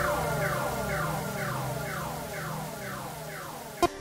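Electronic background music fading out: a falling synth sweep repeats about twice a second over a low steady drone. Just before the end a new dance track cuts in with a thump.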